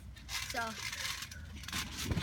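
Steel trampoline springs jingling and creaking as the mat flexes under a boy moving onto and across it on a yoga ball.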